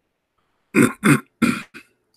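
A man clearing his throat: three short, rough bursts with a weaker fourth, starting about a second in.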